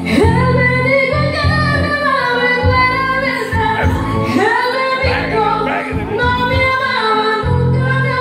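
A woman singing karaoke into a microphone over a recorded backing track, her voice gliding and holding notes above a steady bass line.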